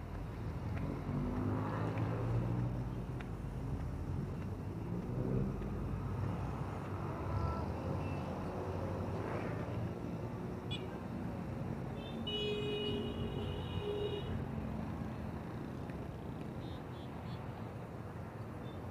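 Road traffic passing below a pedestrian footbridge: a steady low rumble of car and truck engines that swells as vehicles go by. About twelve seconds in, a high-pitched tone sounds for around two seconds.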